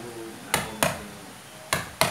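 Hammer blows on a wood-carving chisel cutting into a wooden mask blank: sharp knocks, two about a third of a second apart about half a second in, then another near the end.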